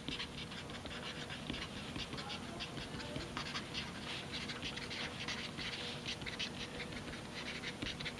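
Felt-tip marker writing block capitals on paper: a quick run of short, soft scratching and squeaking strokes.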